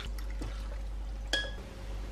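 Rice noodles and broth poured from a stainless steel pan into a ceramic bowl: a soft liquid trickle and splash, with a single light clink about two-thirds of the way through. A steady low hum sits underneath.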